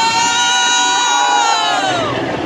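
Riders screaming: a long, high-pitched scream from more than one voice, held for about two seconds and falling off at the end.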